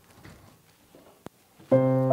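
A keyboard comes in near the end with a loud, sustained chord, the first notes of a live groove; before it there is only faint stage noise and one small click.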